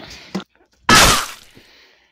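A single loud, sudden crash or bang about a second in, dying away over about half a second, after the tail of a shout.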